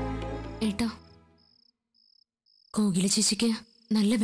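Crickets chirping in an even pulse, about two short high chirps a second. They are heard alone once the background music fades out, then continue under speech.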